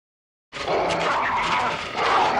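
A wolf snarling: a harsh, rasping growl that starts about half a second in and keeps going.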